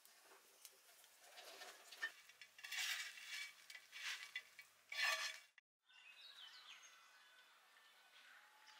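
Hands mixing pieces of fish in a spice paste, giving wet rustling and clinking in uneven bursts. This stops abruptly about five and a half seconds in. After a brief silence come faint outdoor background sounds with birds chirping.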